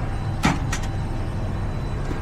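Steady low rumble of a powered-up Bombardier Global 7500's onboard systems in the cockpit. A sharp knock comes about half a second in, followed by a lighter click.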